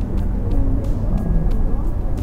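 Steady city street traffic: cars passing on the road beside a market stall, a continuous low noise, with faint music in the background.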